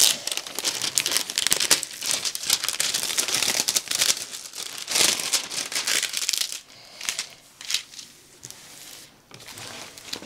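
Clear plastic cover film on a diamond painting canvas crinkling as it is peeled back from the glued surface and smoothed flat by hand. The crinkling is busy for the first six seconds or so, then thins to a few softer rustles.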